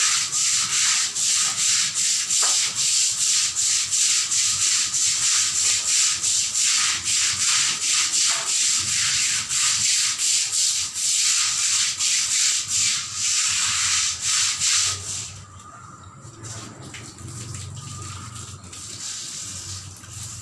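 Long-handled floor brush scrubbing a wet tiled floor in quick, even back-and-forth strokes, about two a second. The scrubbing drops to much fainter strokes about fifteen seconds in.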